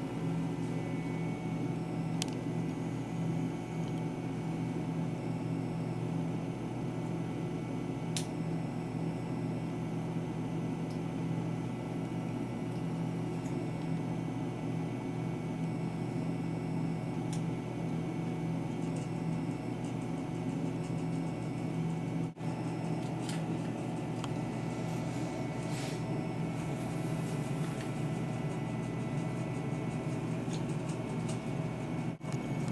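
A steady low machine hum with several even tones. A few faint sharp clicks come through it as small scissors cut into the leathery eggshells.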